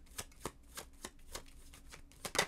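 A tarot deck being shuffled by hand, the cards tapping and slapping together in a run of soft clicks about three a second.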